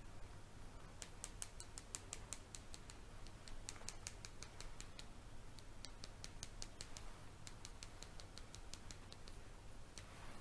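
Soft makeup brush swept over the microphone in an ASMR brushing trigger, giving a faint string of crisp, high clicks, irregular and several a second.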